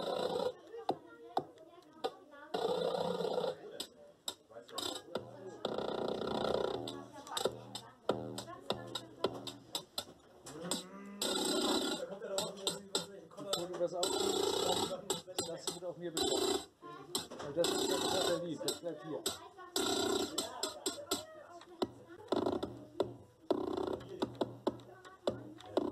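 Short recorded sound clips, many of them voice-like, played one after another from a laptop as a hand touches foil letters wired to a Makey Makey board. Each sound lasts about a second, with brief gaps between them.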